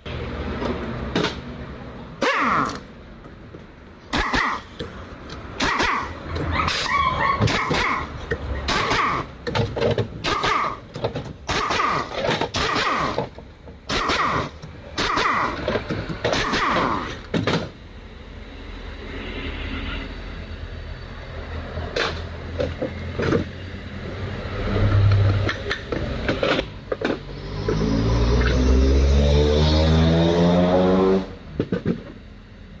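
A run of short, sharp knocks and clatters, many of them in quick succession, in an auto repair shop. Near the end an engine revs up, its pitch climbing steadily.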